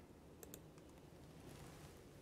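Faint computer mouse clicks, a quick pair about half a second in, with a few softer ticks after, over near-silent room tone.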